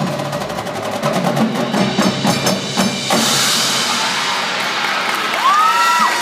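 A marching band's percussion section plays a fast, dense passage of drums and mallet percussion, which stops about three seconds in. A hissing wash follows, with a tone sliding upward near the end.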